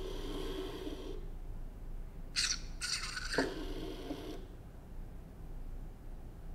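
An Ozobot robot's small built-in speaker playing short electronic sounds as it runs its programmed sequence: one ending about a second in, another from about two and a half to four and a half seconds in.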